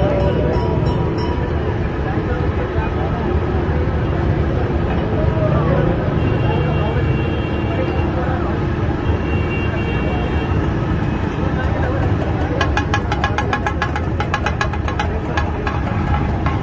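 Mince sizzling and steaming on a large iron griddle at a busy street-food stall, with voices and traffic around it. Near the end a quick, even run of metal clacks, about six or seven a second, as steel spatulas strike the griddle.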